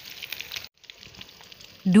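Hot oil in a wok sizzling and crackling as egg-dipped noodle-and-meatball skewers deep-fry. The sound cuts out briefly a little before a second in, then the sizzle resumes.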